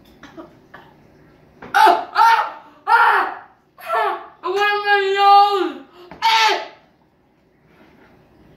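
A child's wordless cries: about six loud vocal outbursts, the middle one a long held cry, in reaction to the burn of a mouthful of sriracha hot sauce.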